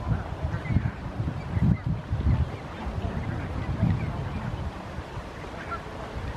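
A flock of barnacle geese calling in short, scattered calls, over an uneven low rumble that swells now and then.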